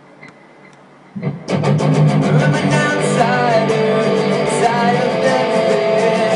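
Guitar music starts abruptly about a second and a half in and carries on loud and steady, with a regular beat.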